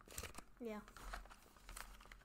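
Faint crinkling of a plastic beef jerky bag being handled, a scatter of short crackles.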